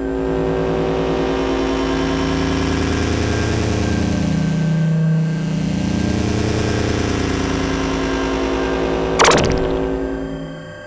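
Star Trek-style transporter beam sound effect: a loud, dense shimmering hum of many sustained tones that holds for about nine seconds. It ends with a sharp zap about nine seconds in, then fades out.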